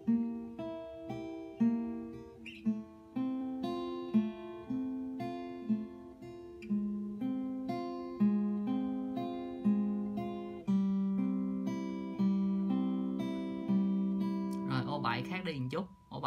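Steel-string acoustic guitar played fingerstyle: a slow, even arpeggio of single plucked notes on the treble strings, about two notes a second, each note ringing into the next. This is a beginner fingerpicking exercise played at practice tempo. A man's voice comes in near the end.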